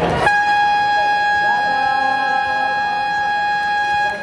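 Basketball game buzzer (scoreboard horn) sounding one loud, steady tone, starting a moment in and held for about four seconds. Voices in the hall are heard under it.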